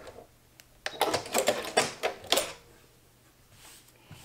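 Sewing machine stopping at the start, then a few sharp clicks and a cluster of clicks and light knocks over about a second and a half as the quilted fabric is freed from the machine and handled.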